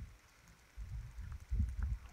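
Low, uneven bumps and rumble of handling noise as a whip finisher is brought to the thread at a fly's head in the tying vise, with a few faint ticks.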